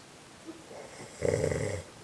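A man snoring in his sleep, open-mouthed: one snore about a second in, lasting under a second.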